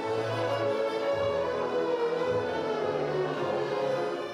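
A large massed-violin ensemble of about a hundred players playing long held notes together, over a slowly moving bass line.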